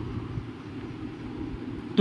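Steady low background rumble with faint hiss, no distinct events.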